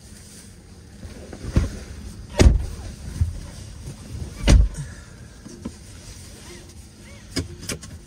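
Tesla's front doors shutting with two heavy thuds, about two and a half and four and a half seconds in, after a lighter knock; two sharp seatbelt-latch clicks follow near the end.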